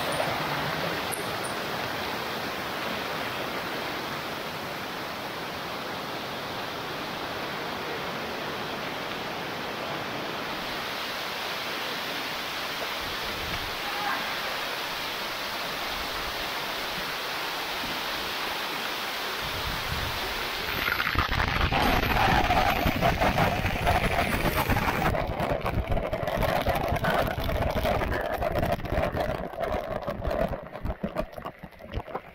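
Fast mountain stream rushing over boulders in a steady roar of water. About twenty seconds in it becomes louder and rougher: a waterfall pouring close by, with water splashing onto the microphone.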